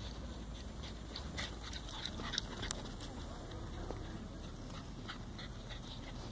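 Faint sounds of small dogs playing on grass, with a few short clicks in the middle.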